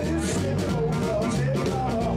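Live band playing: electric guitar over bass and drums, loud and steady.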